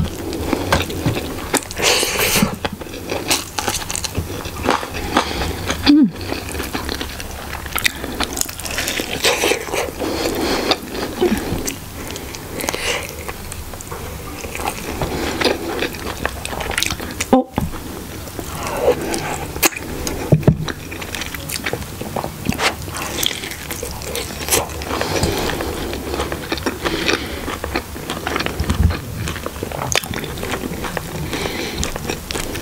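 Close-miked chewing and wet mouth sounds of eating soft chicken curry and rice, irregular and continuous, broken by a few brief silent cuts.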